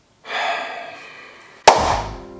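A sudden ringing, hissy sound about a quarter-second in that fades away over a second. It is followed near the end by one sharp, loud hand clap, with music starting under it.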